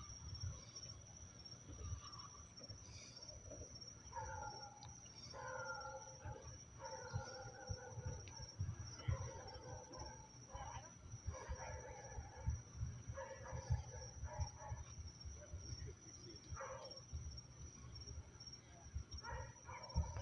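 Faint, short pitched calls repeated in quick groups, starting about four seconds in and returning near the end, over a steady high-pitched whine.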